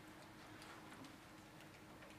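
Near silence: room tone with a faint steady hum and a few faint ticks.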